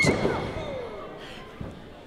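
A wrestler's body slammed onto the wrestling ring mat: one loud thud at the start that rings out through the hall and fades over about a second and a half.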